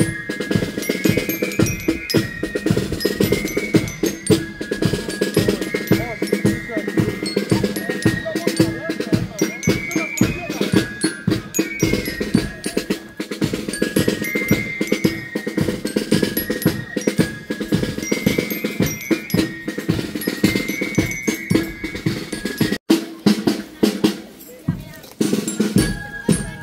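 A marching band playing a march: snare and bass drums beating a steady rhythm under a high melody on bell lyre (marching glockenspiel). The melody stops near the end while the drums carry on.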